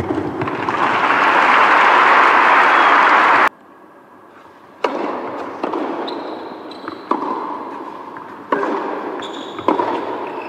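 Crowd applauding a won point, swelling and then cut off suddenly about three and a half seconds in. After a short quiet gap, a tennis rally: sharp pops of racket hitting ball about every second, over a murmuring indoor hall.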